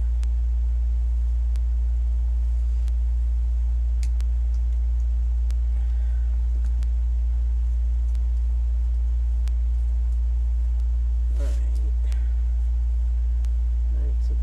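A loud, steady low hum runs under faint scattered clicks and rustles of deco mesh and clothespins being handled. A short bit of voice comes near the end.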